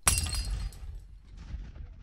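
Ceramic dove figurine smashing on a hard floor: one sharp crash at the start, then the clink of scattered shards fading out.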